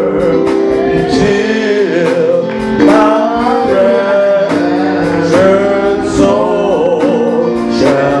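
Gospel singing with instrumental backing: a voice holds and bends long, wavering notes over sustained chords.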